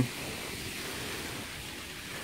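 Steady outdoor background hiss with no distinct event.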